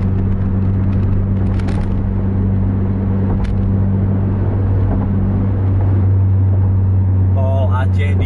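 Car driving at highway speed, heard from inside the cabin: a steady engine drone with a low, even hum under road and tyre noise.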